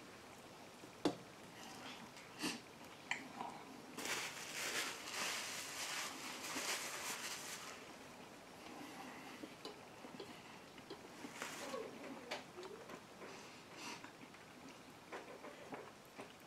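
Faint sounds of a person chewing a bite of a crispy breaded chicken sandwich: scattered soft clicks and smacks, with a stretch of hissy noise from about four to eight seconds in.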